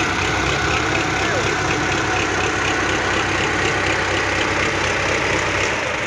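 Tractor diesel engine idling steadily, with people's voices over it.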